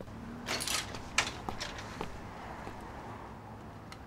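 A few faint clicks and knocks over a low, steady background, with a brief rustle about half a second in and the sharpest click about a second in.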